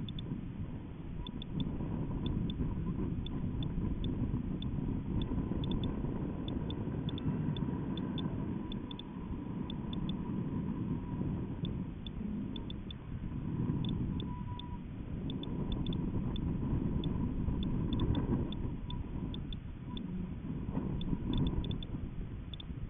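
Low, fluctuating rumble of air buffeting and vibration on a balloon payload camera's microphone in flight, with a faint steady whine and scattered faint ticks.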